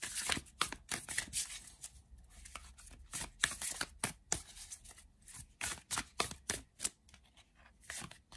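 A deck of tarot cards being shuffled by hand: a run of irregular soft clicks and swishes as the cards slide and slap against one another.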